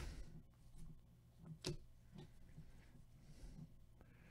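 Near silence with a few faint ticks of football trading cards being slid off a stack by gloved hands; one tick, about a second and a half in, is clearer than the rest.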